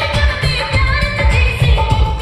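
Bollywood film song with singing over a quick, steady drum beat, mixed as 8D audio that pans around the listener.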